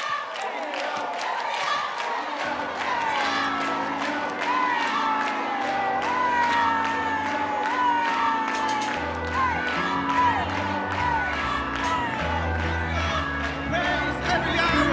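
Live church band starting up: bass and keyboard chords come in about two and a half seconds in, under a cheering crowd. A voice holds a high note that slides up and down over the music.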